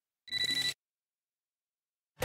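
A short electronic telephone-style ring, about half a second long, with a rapid flutter: a DVD menu's selection sound effect.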